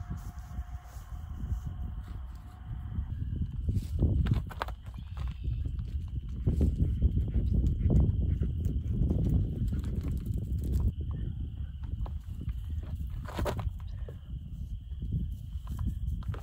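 Microfiber cloth rubbing and wiping over a car's dirty paint, with an uneven low rumbling noise that swells and fades and a few sharp clicks. The rubbing is loudest about halfway through, when the cloth works along the rear bumper close to the microphone.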